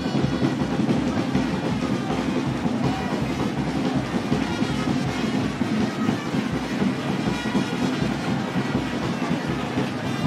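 A school band playing music with a fast, steady beat, heard through a dense wash of crowd noise.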